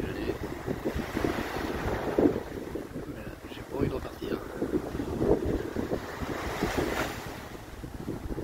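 Wind buffeting the microphone in gusts over the wash of small waves breaking on a sandy shore.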